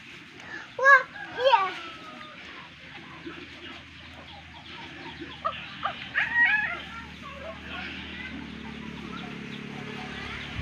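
Small birds chirping steadily in the background, with two loud short calls about a second in and a cluster of louder calls around six seconds.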